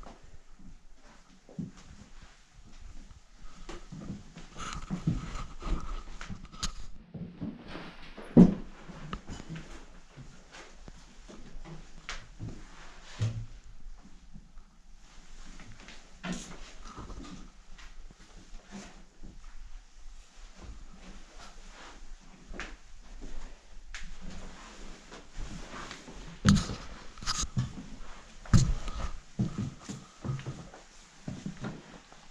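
Footsteps and handling of debris on wooden floors littered with broken glass, paper and boxes: irregular crunches, knocks and clatters. The loudest knock comes about eight seconds in, with a cluster of sharp ones near the end.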